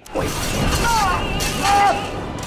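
Ceiling tiles and a metal light fixture crashing and shattering as a man falls through a suspended drop ceiling, with a man's voice over the crash. The crash runs almost the whole time and peaks near the end.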